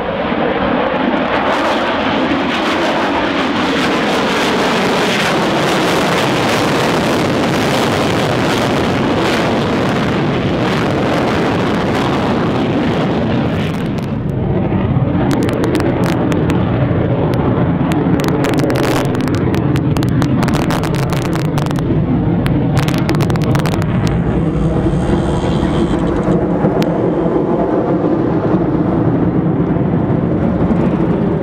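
Jet noise from a Su-30MKM fighter's twin engines during a display flight. It is a continuous loud rumble whose pitch wavers in the first few seconds. About halfway through it dips briefly, then comes back rougher and slightly louder, broken by many short sharp cracks.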